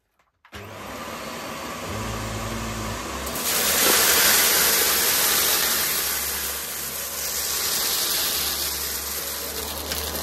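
Vax upright vacuum cleaner switching on about half a second in and running over carpet scattered with debris. It gets louder and hissier from about three and a half seconds as it takes up the mix.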